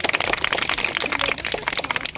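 A small group of people clapping by hand, a dense, uneven patter of claps.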